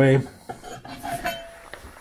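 Metal pieces clinking and rattling as they are handled, with a faint short ring about a second in.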